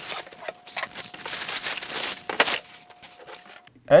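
Clear plastic packaging bag crinkling and rustling as a stage light is pulled out of it and its cardboard box. The rustle is loudest from about a second to two and a half seconds in, with a sharp crackle near the end of that stretch.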